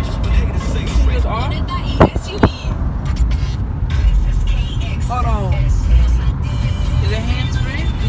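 Low rumble of a car driving, heard from inside the cabin, with two sharp clicks about two seconds in.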